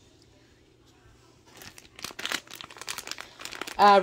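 Plastic wax-melt packaging crinkling as it is picked up and handled. It starts about a second and a half in as a run of irregular crackles that grows louder.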